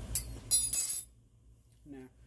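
A sharp click, then a quick run of bright clinks of a spoon against a dish or pot, all within the first second.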